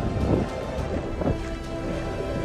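Wind buffeting the microphone in a steady low rumble, with faint sustained tones underneath.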